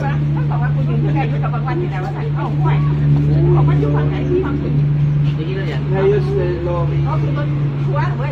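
Several people chatting and laughing together at close range, over a steady low drone like an idling vehicle engine.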